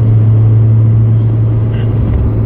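2013 Audi TT RS's turbocharged five-cylinder engine heard from inside the cabin, running at a steady low rpm with an even, unchanging drone, over road and wind noise.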